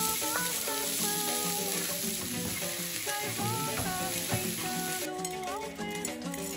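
Diced onion sizzling in hot oil in a frying pan as it is tipped in from a cutting board, a dense steady hiss that cuts off about five seconds in. Background music plays underneath.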